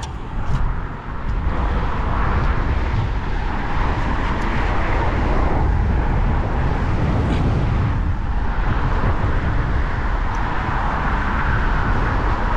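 Steady road noise from vehicles driving over the bridge, mixed with wind rumbling on the microphone, and a few faint ticks.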